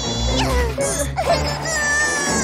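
Cartoon character voices making short straining noises that rise and fall in pitch, over background music.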